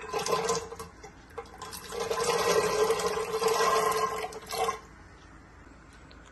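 Soaked white chickpeas poured from a glass bowl into water in a pressure cooker, splashing: a short pour at the start, then a longer pour from about two seconds in to nearly five.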